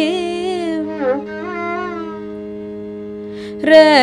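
Carnatic vocal and violin music in raga Kharaharapriya: a female voice and violin trace gliding, ornamented phrases over a steady sruti drone, without percussion. The melody fades out after about two seconds, leaving only the drone, then comes back in loudly near the end.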